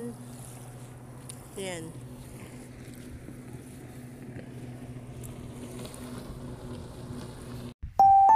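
Motorboat engine running steadily out on the water, a low drone, with a short falling vocal sound about two seconds in.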